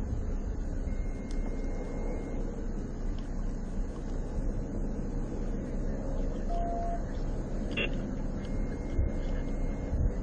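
Steady low rumble of a running patrol car heard from inside its cabin, with a short beep about two-thirds of the way through and a faint click just after it.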